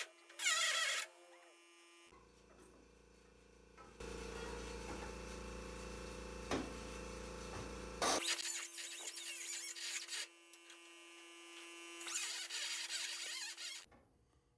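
Pneumatic cutting and grinding tool working the steel of a car's radiator core support, running in several bursts with a longer steady run in the middle.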